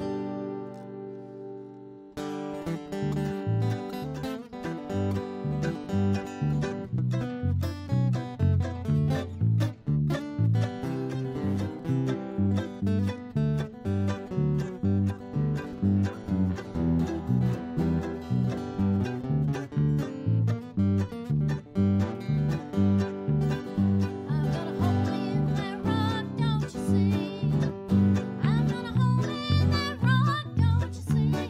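Small acoustic country band playing an instrumental passage: strummed acoustic guitar, mandolin and electric bass keeping a steady beat. A held chord opens it, and the full band comes in about two seconds in.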